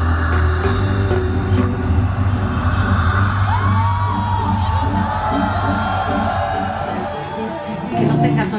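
Live pop dance music with a steady beat and deep bass, loud throughout.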